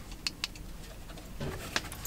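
Two short, sharp clicks in quick succession, then a fainter one near the end, from the buttons and plastic housing of a Snap-on LED work light as it is handled and switched on.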